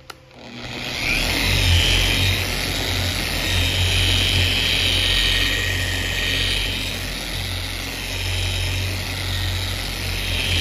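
Corded Bauer 6-inch long-throw random-orbit polisher starting up and spinning up to speed within the first second. It then runs steadily under load with its foam pad working polish on the car's painted roof, a low hum under a high whine that swells and fades every couple of seconds.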